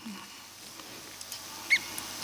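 Quiet lecture-hall room tone with a steady hiss and a few faint clicks, broken about three-quarters of the way through by one short, high squeak.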